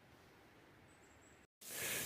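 Near silence, broken by an edit cut about one and a half seconds in. After the cut a faint, rising rustle of walking through dry leaves in the woods begins.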